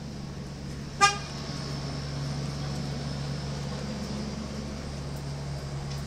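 A single short car horn toot about a second in, then a steady low hum.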